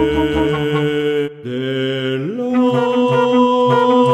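Contemporary chamber music: a baritone singing long held notes with bass flute and bass clarinet. The sound breaks off briefly a little over a second in, then slides upward into a long sustained note.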